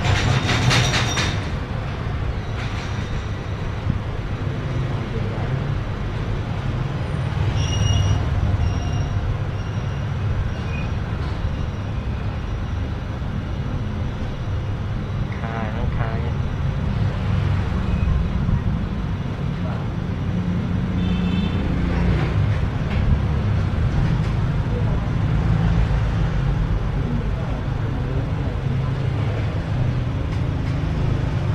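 Steady low rumble of background noise, with a few faint brief higher tones.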